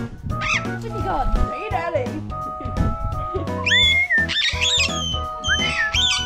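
Background music with a singing voice. The melody is held in steady notes with gliding vocal lines over it, and a high held note comes about two-thirds of the way through.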